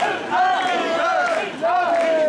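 Mikoshi bearers chanting together in loud, repeated shouted calls as they carry the portable shrine, many men's voices in unison with brief breaths between phrases.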